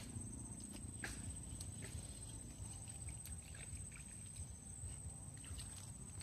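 A steady, high-pitched insect buzz, with a few faint, scattered ticks and clicks over a low rumble.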